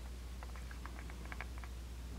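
Quiet room tone: a steady low hum with a scattering of faint, light ticks from about half a second in.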